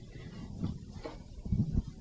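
A few faint, short low thuds over quiet background room noise.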